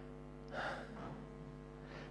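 A man's short, soft breath about half a second in, over a faint steady hum.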